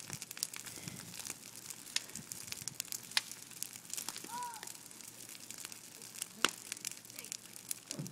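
Burning brush pile crackling, with irregular sharp pops and snaps of burning branches.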